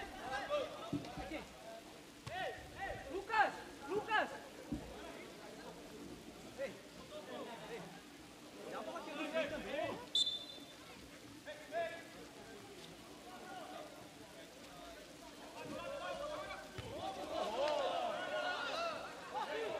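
Faint shouts and calls of players on an outdoor futebol 7 pitch, with a steady hiss of rain underneath. A brief high whistle sounds about ten seconds in.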